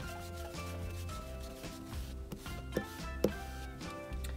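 Soft background music with held notes, under the quiet scrubbing of a blending brush rubbed over a chamois pad to wipe its ink off, with two light clicks a little after the middle.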